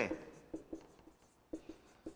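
Marker pen writing on a whiteboard: several brief strokes of the tip across the board.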